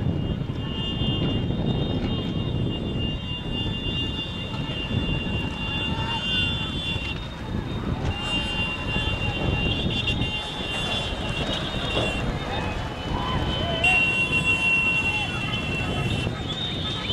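Several motorcycle engines running alongside, with shouting voices over them. A high steady tone comes and goes several times.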